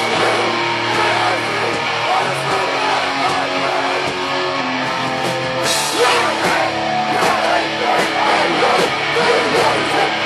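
Live hardcore punk band playing loudly, distorted electric guitars over drums, with a cymbal crash about six seconds in.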